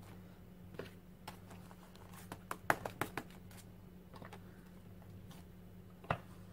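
Light, irregular taps and knocks of a wood-mounted rubber stamp being inked and pressed down onto a paper journal page, several in quick succession around the middle, over a faint steady low hum.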